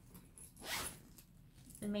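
Zipper on the main pocket of a slouchy black handbag being pulled open in one quick stroke, about half a second long, just under a second in.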